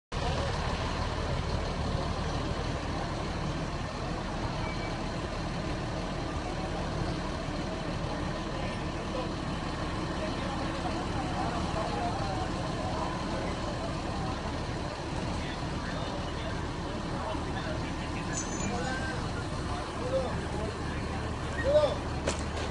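Street ambience: a steady low rumble of an idling vehicle or nearby traffic, with faint, indistinct voices in the background and a brief louder knock near the end.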